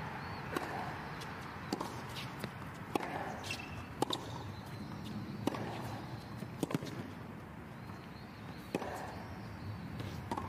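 Tennis serve and baseline rally on a hard court. Sharp racket strikes and ball bounces come roughly once a second, about eight in all, over steady low background noise.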